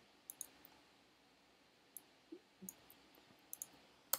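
A handful of faint, scattered clicks from a computer keyboard and mouse as code is typed and run, with near silence between them.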